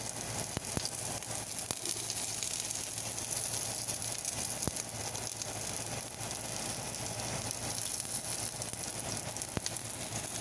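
Sliced garlic sizzling steadily in hot oil, with a few scattered small pops.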